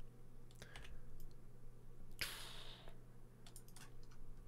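Quiet computer keyboard and mouse clicks: a few sharp, scattered clicks as keys are pressed and vertices selected. A short hiss comes about two seconds in, over a steady low electrical hum.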